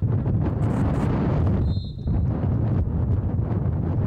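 Wind buffeting the camera's microphone: a loud, steady, low rumbling noise that starts suddenly and dips briefly about two seconds in. Just before the dip there is a short, high-pitched tone.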